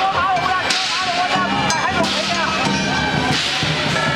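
Chinese lion-dance percussion: sharp cymbal crashes, the loudest about a second in and again near the end, over drumming and gong.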